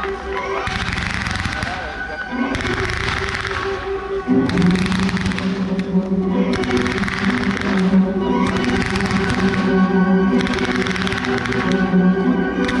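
Music with sustained low notes plays over a fireworks display. Bursts of firework noise come about every second and a quarter as fans of comets are fired.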